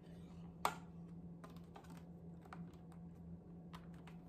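Light, scattered clicks and taps of a plastic facial steamer being handled and turned over in its cardboard box, with one sharper knock just over half a second in.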